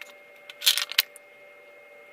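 Hands handling metal hand tools and electrical wire on a wooden tabletop: a short metallic rattle as wire cutters are picked up, then a sharp click about a second in.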